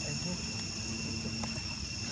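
Steady, high-pitched drone of forest insects, several continuous shrill tones held without a break, over a low background rumble.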